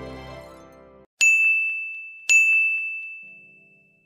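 Background music ends about a second in, followed by two bright, high bell dings about a second apart, each ringing out slowly.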